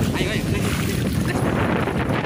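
Steady noise of a small boat under way on open water, with wind buffeting the microphone and water rushing past.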